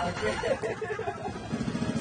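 Faint voices and laughter, then near the end a small boat engine comes in, running with a steady low pulsing hum.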